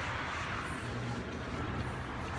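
Steady background noise of road traffic: a low rumble under an even hiss, with no distinct events.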